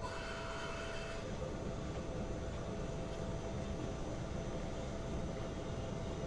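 CNC vertical mill running a drilling cycle: the spindle turning a twist drill that feeds steadily down into a metal block, a constant machine noise. A faint whine fades out about a second and a half in.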